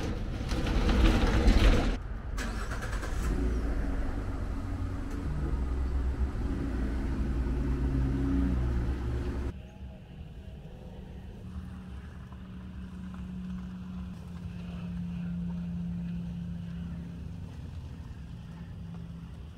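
Ford F-150 pickup's engine starting and running, its pitch shifting as it moves off. After an abrupt drop in level, the truck drives in from a distance as a quieter, steady engine hum.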